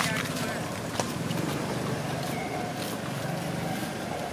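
Outdoor background of faint, indistinct voices over a steady low hum, with a single sharp click about a second in.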